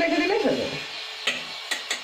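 Chicken being mixed with its marinade by hand in a stainless-steel bowl: wet stirring, with a few light clicks against the bowl in the second half. A voice is heard over the first part.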